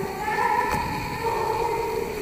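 Live band playing, led by a high, wailing melody line held on long notes that step between pitches, with a single sharp percussive hit near the middle.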